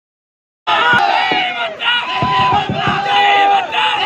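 Dead silence for under a second, then a crowd of men shouting slogans together, with long drawn-out cries overlapping.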